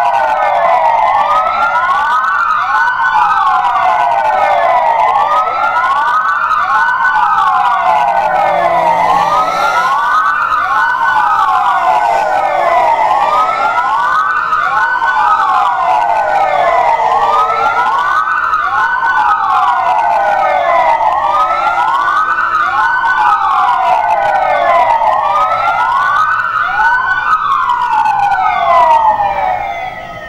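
Sirens sounding to mark the moment of the Proclamation: several wails overlapping, each falling in pitch and starting again about every second, at a steady level until they stop near the end.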